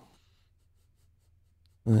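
Near silence: a faint steady low hum of room tone, with the tail of a man's "uh-oh" at the start and his voice coming back just before the end.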